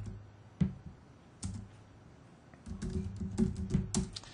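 Typing on a computer keyboard: a couple of separate key clicks, then a quicker run of keystrokes in the last second or so as a name is entered into a search box.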